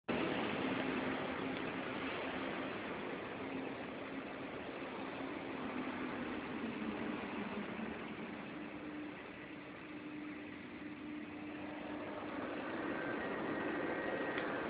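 Steel mill machinery running: a steady wash of noise with a low hum that steps up in pitch about halfway through.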